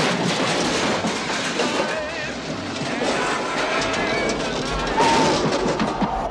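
A car smashing through metal trash cans and wooden crates, a loud sudden crash followed by clattering debris, heard over music with a singing voice.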